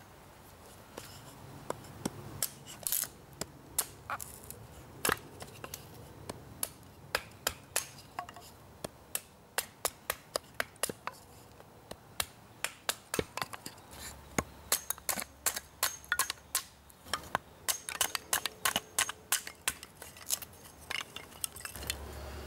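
Hand axe splitting a thin wooden board into kindling sticks: a long run of sharp, irregular knocks and cracks, a few a second, coming thicker in the second half.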